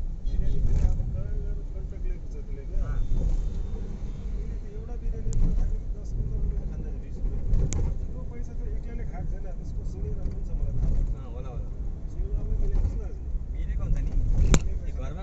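Steady low rumble of a moving road vehicle, heard from on board, with voices talking over it now and then.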